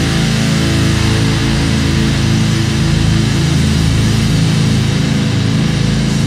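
A metalcore band playing live: heavy electric guitars and drum kit.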